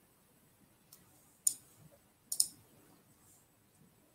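A few sharp, short clicks over a quiet room: a faint one about a second in, a louder single click about a second and a half in, then a quick double click just after two seconds.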